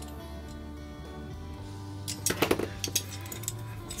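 Background music with a short cluster of light metallic clicks and clinks a little past halfway, from hand-working a framelock folding knife and a small screwdriver at its pivot.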